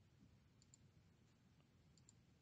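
Near silence: faint room tone with a couple of soft computer mouse clicks, each a quick press-and-release pair.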